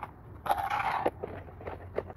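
Plastic planter pots scraping against each other as one is lifted onto a stackable planter tower, then a couple of short clicks as it is set in place.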